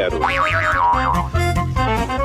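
Short music stinger: a bass-backed tune with several quick rising-and-falling pitch glides in its first second, like a comic cartoon sound effect.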